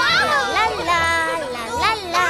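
Several high, excited cartoon voices exclaiming without clear words, their pitch sliding up and down, over background music.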